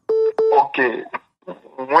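A telephone line beep, a steady tone broken by a click into two short parts within the first half second, followed by a voice talking over the phone line.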